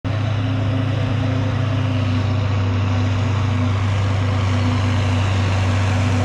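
John Deere tractor engine running at a steady speed with a constant low hum, working under load while chopping hay.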